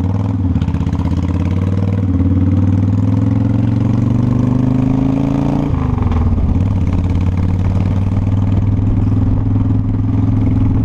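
Cruiser motorcycle engine pulling away from a stop, its pitch climbing steadily under acceleration, then dropping suddenly about six seconds in as it shifts up, and running on steady.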